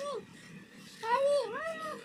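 A cat meowing: a short falling meow right at the start, then a longer two-part meow that dips and rises again in the second half.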